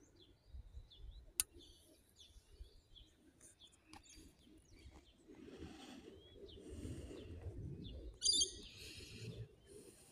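Small birds chirping in short, scattered calls, with one louder, ringing call near the end. A low rumble runs through the second half.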